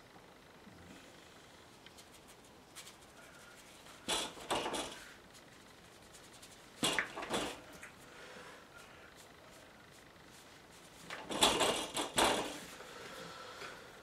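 Three short bursts of knocking and clattering, about four, seven and eleven seconds in, over a quiet room: objects being handled and put down.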